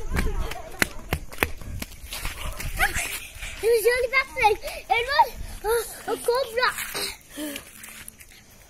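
Children's high-pitched, wordless cries and squeals, rising and falling in quick bursts through the middle of the stretch. Before them, in the first couple of seconds, there are a low rumble and sharp knocks from running with the phone.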